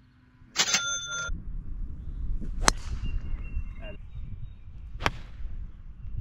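About half a second in, a short metallic clatter with ringing tones. Then two sharp cracks of a golf club striking the ball, about two and a half seconds apart.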